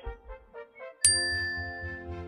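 Soft music, then about a second in a bright chime strikes sharply and rings on, fading, over music with a steady low pulsing beat.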